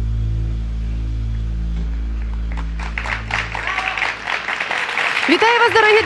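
Sustained low instrumental music fades out as an audience starts applauding about halfway through; a woman's voice begins near the end.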